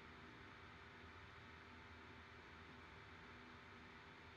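Near silence: faint steady room tone and hiss on a video-call recording.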